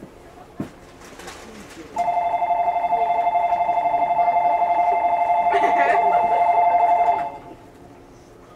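Station departure bell ringing: a loud, steady two-tone electronic trill that starts about two seconds in and cuts off sharply about five seconds later, the signal that the stopped train is about to leave.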